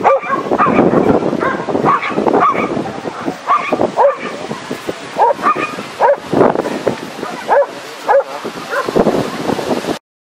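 A dog barking and yipping repeatedly, about one or two sharp barks a second, while running an agility course.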